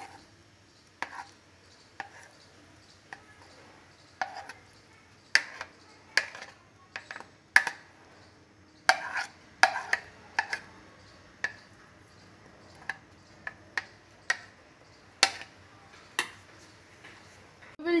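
A spoon scraping and knocking against a ceramic plate as thick cake batter is scraped out into a baking container: irregular sharp clicks and short scrapes, at times two or three a second, with quiet gaps between.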